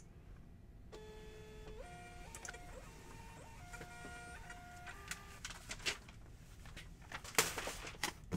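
Thermal label printer printing a shipping label: its feed motor whines in a series of steady pitches that step up and down for about four seconds. A short, louder rustle follows near the end.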